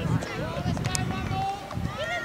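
Several voices shouting and calling over one another at a junior rugby league game, with no clear words and a few short knocks among them.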